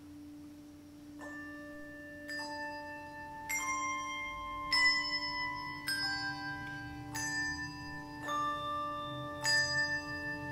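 Handbell choir starting a piece: about a second in, handbells begin ringing one note at a time, a new stroke a little over once a second, each left ringing so the notes overlap. A steady hum runs underneath.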